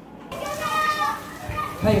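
Children's voices, calling and playing, come in a moment after the start. A woman's short spoken word follows near the end.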